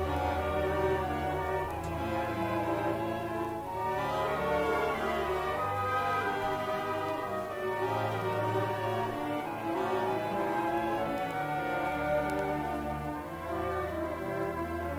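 Orchestra playing classical music, with violins carrying the line over brass and a low bass part, played back from a digitized vinyl LP.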